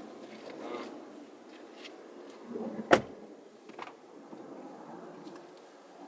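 Faint movement and handling noise inside a parked car, with one sharp click about three seconds in and a few fainter ticks.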